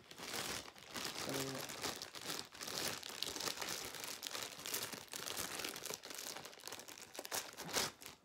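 Clear plastic bag crinkling and rustling steadily as it is handled and pulled off a small replica mask by hand. A brief murmur of voice comes about one and a half seconds in.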